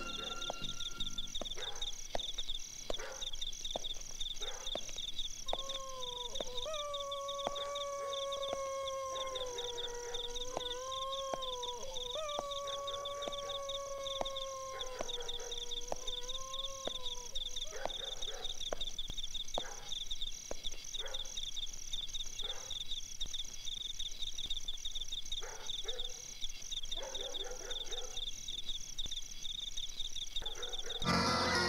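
A canine howl, twice, each a long wavering call of several seconds, over night insects chirring steadily at a high pitch.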